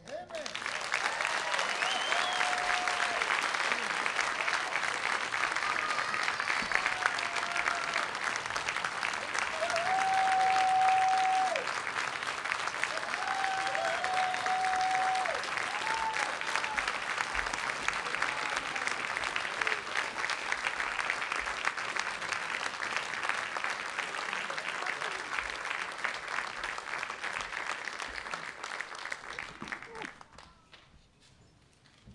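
An audience in a theatre hall giving a long standing ovation of dense, steady clapping, with a few voices calling out held whoops over it in the first half. The applause dies away near the end.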